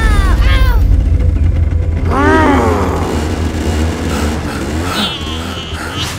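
A young boy crying out in pain after a fall, several short wailing cries that rise and fall in pitch, over a steady low rumble.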